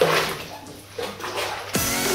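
Water splashing in a bathtub over faint background music. Near the end a louder music track starts with a deep falling bass hit.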